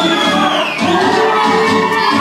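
Bulgarian folk dance music for a Misian (northern Bulgarian) dance, playing steadily and loudly in a large hall.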